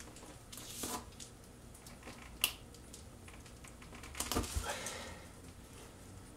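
Faint handling sounds of a tire plug insertion tool being pushed into a tire's tread: a few scattered soft clicks and rustles, the sharpest single click about two and a half seconds in and a short cluster with a couple of low knocks a little later.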